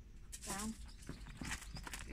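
A person's short, high, wavering voice sound about half a second in, followed by a few sharp clicks.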